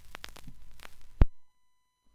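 Vinyl record surface noise from the stylus riding the silent groove between songs: scattered crackles and clicks over a low rumble. A loud click comes a little over a second in, and the sound then cuts off to silence.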